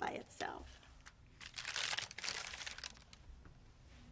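Crinkling and tearing of packaging, a rustling burst lasting about a second and a half in the middle, typical of a sterile dressing or glove wrapper being handled and opened.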